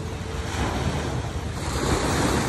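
Small waves breaking and washing up a sandy shore in a steady rush, swelling near the end as a wave runs in, with wind rumbling on the microphone.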